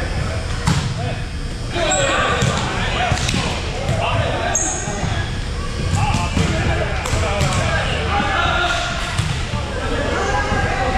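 Indoor volleyball rally: the ball is struck a few times with sharp smacks that ring in the hall, and there are a couple of short high squeaks from sneakers on the hardwood court, with indistinct player voices throughout.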